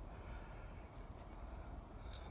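Faint, steady outdoor background noise with a low rumble, between phrases of speech.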